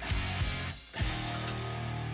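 Background music led by guitar, with a short drop in level just before the one-second mark.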